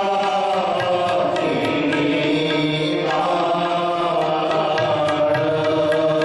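Sikh shabad kirtan: men singing a devotional hymn in held, chant-like lines over sustained harmonium notes, moving to a new phrase about three seconds in.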